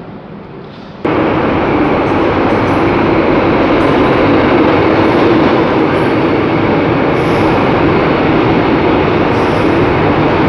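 Quiet station platform ambience, then about a second in a sudden cut to a Santiago Metro train running along the platform: a loud, steady rumble with faint, intermittent high squeals.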